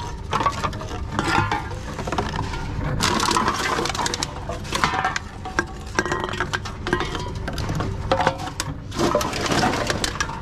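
Aluminium drink cans and plastic bottles clinking, rattling and knocking together as they are handled one by one and fed into the intake of a TOMRA reverse vending machine, with irregular clicks and clunks throughout.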